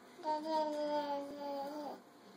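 A toddler's voice holding one long, sing-song vowel at a nearly steady pitch for about a second and a half, dipping slightly at the end before it stops.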